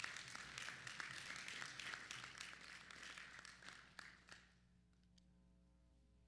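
Faint audience applause that dies away about four and a half seconds in, leaving a low steady hum of room tone.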